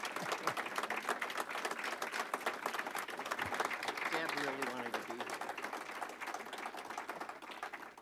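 Audience applauding with dense, steady clapping that thins out near the end, with a few voices faintly mixed in.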